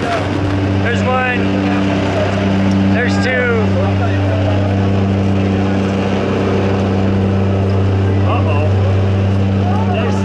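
Steady drone of a skydiving airplane's engine and propeller, heard from inside the cabin. A few short bursts of voices cut through it about a second in, around three seconds, and near the end.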